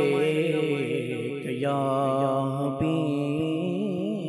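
A man singing an Islamic devotional song into a microphone, drawing out long, ornamented notes whose pitch wavers and turns, over a steady low hum.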